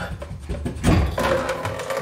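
Brass compression shut-off valve being wiggled by hand to work it loose on a copper pipe, with a few knocks and scraping near the middle.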